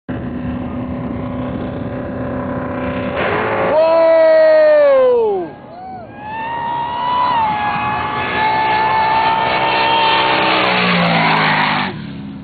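Supercharged alcohol-burning drag race engines idling at the line, then launching with a sudden very loud high-rev blast. About two seconds into the run the engine note falls away steeply as the throttle is lifted, then revs back up and pulls hard at high rpm for several seconds before fading.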